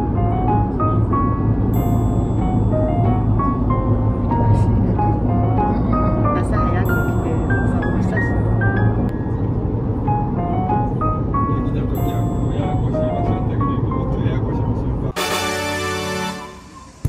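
Background music, a light melody of short stepping notes, over the steady low rumble of road noise inside a moving car. Near the end it cuts suddenly to a different, denser sound.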